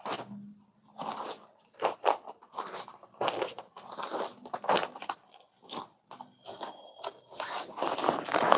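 Rustling and crinkling of a stiff, gold-woven soft silk saree being lifted and spread out by hand, in irregular bursts.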